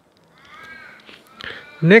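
A faint, harsh bird call in the background, once, lasting under a second.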